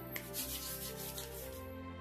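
Hands rubbing together, working in a thick hand cream with a soft swishing friction sound that is strongest in the first half. Quiet background music with held notes runs underneath.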